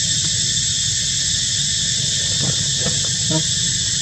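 Steady high-pitched drone of insects, with a low steady hum beneath it. Brief snatches of a human voice come in near the end.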